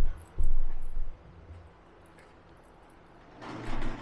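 Two short, deep rumbles of wind buffeting the microphone, the first right at the start and a longer one lasting about half a second soon after, then a quiet stretch.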